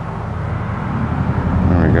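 Low engine rumble from a passing vehicle, growing steadily louder.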